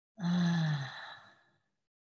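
A woman's long, breathy sigh, falling in pitch and fading out over about a second.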